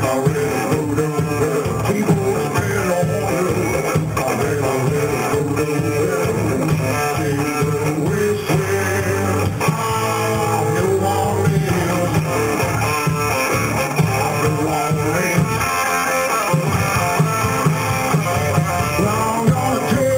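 A live blues-rock band playing a song: electric bass and drums driving under guitar, with a harmonica played into the vocal microphone carrying the lead line.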